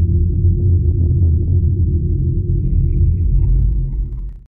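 Deep, steady rumbling drone of a cinematic sound effect under an animated title. A faint thin high tone joins it about three seconds in.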